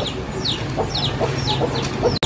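Chicks peeping: a quick run of high, short cheeps that fall in pitch, several each second, with a few fainter, lower clucks among them.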